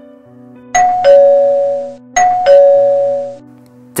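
Two-tone ding-dong doorbell chime rung twice, about a second and a half apart: each time a higher note followed by a lower note that rings out and fades. A low steady music drone runs underneath.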